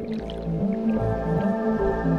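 Background music with a steady low beat; a layer of higher sustained tones comes in about halfway through.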